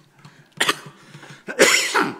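A man coughing: a short cough about half a second in, then a louder, longer cough near the end.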